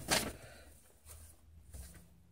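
Sheets of letter paper rustling as they are handled, with a short burst of rustling just after the start, then quieter scattered rustles.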